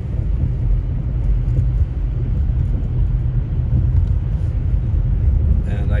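Steady low rumble of a car being driven, heard from inside the cabin: engine drone and road noise.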